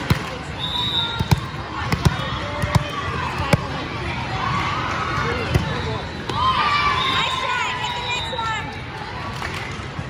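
A volleyball bounced several times on a hard sports-court floor, about one bounce every three-quarters of a second, then struck by a serve about five and a half seconds in. The chatter and calls of players and spectators in a large gym run underneath.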